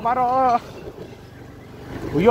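A man's drawn-out, wavering 'waaa' vocalising, which breaks off about half a second in, leaving a steady low rumble of a motorcycle riding over a rocky dirt track.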